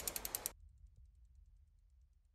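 A quick run of six or seven sharp, ratchet-like clicks in the first half-second, then near silence.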